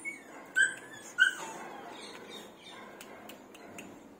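Greyhound giving two short, high-pitched whines, about half a second and a second in.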